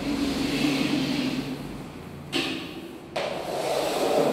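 Wide brush swishing and scraping over a wooden parquet floor as wet floor finish is spread, with louder strokes starting suddenly a little past halfway and again about three seconds in.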